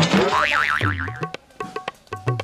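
Comedy sound effect: a sudden wobbling, warbling tone for about half a second. It runs into a short drum phrase of low, pitch-bending drum strokes like tabla, with light clicks.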